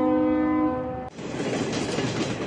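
A train horn sounds a steady chord, cutting off about a second in. The noisy rumble and clatter of a commuter train crossing a steel railway bridge follows.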